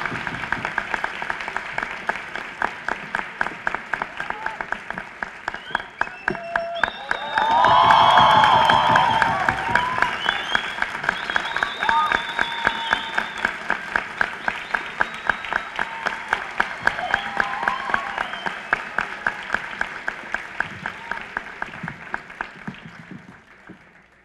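A theatre audience applauding, clapping together in a steady beat, with shouts and cheers swelling about seven seconds in. The clapping fades away near the end.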